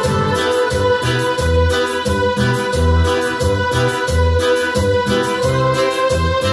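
Electronic keyboard playing a cumbia instrumental passage: a held organ-like chord over a bass line of separate notes and a fast, steady percussion beat.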